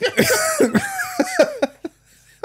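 A man laughing, his voice breaking into a run of short breathy bursts that fade out near the end.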